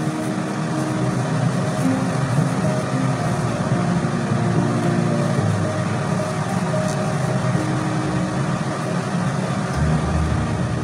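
A steady mechanical hum with a low drone and a few held low tones that come and go.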